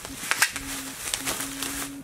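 Bubble wrap and plastic bags crinkling and rustling as hands unwrap a package, with scattered sharp crackles. A faint steady hum runs underneath, broken once about halfway.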